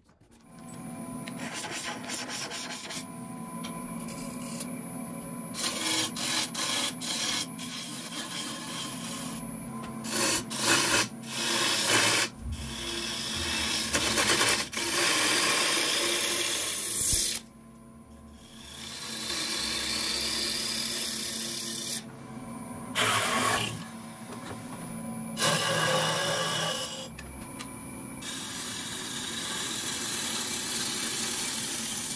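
Wood lathe starting about half a second in, then running with a steady motor hum. A turning gouge cuts the spinning wood blank in repeated passes, each a scraping, rasping cutting noise lasting one to several seconds and stopping between passes.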